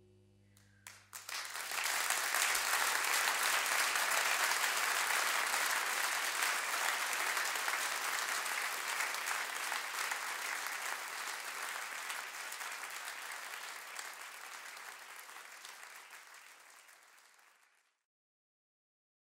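Live concert audience applauding as the band's last held notes die away: a few first claps about a second in, then full, steady applause that gradually fades out near the end.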